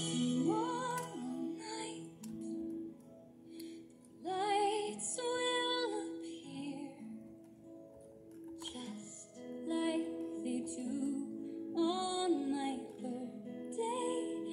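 A woman singing a bright pop melody over strummed acoustic guitar, with long held notes in wavering vibrato and short pauses between phrases.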